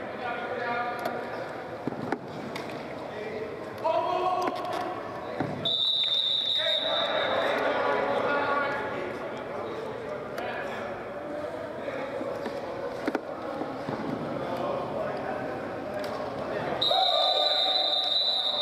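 Referee's whistle blown twice, each a steady shrill blast of about a second, the second near the end, over players' shouts and chatter echoing in an indoor sports hall, with a few brief thumps.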